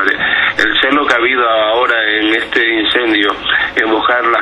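Only speech: a man talking in Spanish, with a narrow, radio-like sound.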